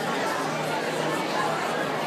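Crowd of people chattering in a steady babble of overlapping voices, with a low steady hum beneath.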